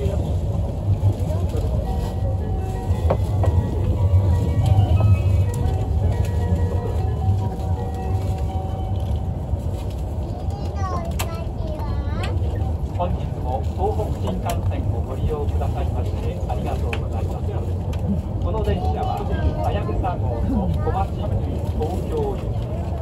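Steady low rumble inside the cabin of an E5 series Shinkansen moving along an elevated viaduct, with faint voices over it.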